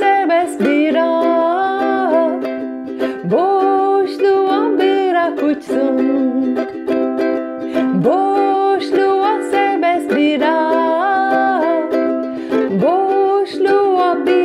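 A woman singing a short, repeating folk-style melody in Turkish while strumming chords on a ukulele.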